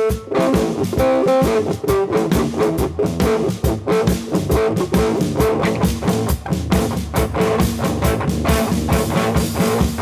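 Live instrumental rock: an electric guitar played over a drum kit, with busy drumming throughout.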